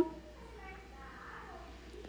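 A short pause in a woman's voiceover narration, with only faint background noise between her words.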